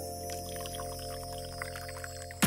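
Liquid pouring in a thin stream from a drink dispenser's spigot into a glass of ice, under steady background music with long held notes.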